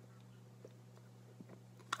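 Near-quiet room with a steady low hum and a few faint, brief mouth clicks as a man puffs on a tobacco pipe.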